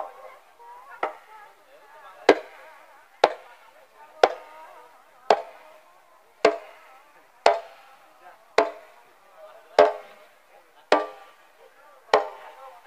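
Sharp percussive cracks about once a second, fairly evenly spaced, over fainter music and voices.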